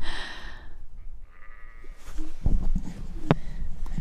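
A breathy laugh trailing off, then crackling and rustling of dry twigs and brush underfoot, with a couple of sharp snaps of twigs.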